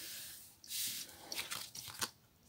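Hands pressing and smoothing card stock down onto a glued card base: soft papery rubbing, then a few light crinkles as the card is handled.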